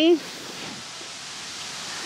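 Steady, even hiss of outdoor background noise, following the tail of a spoken word at the start.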